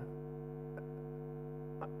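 Steady electrical mains hum from the microphone and sound system, with a faint click near the end.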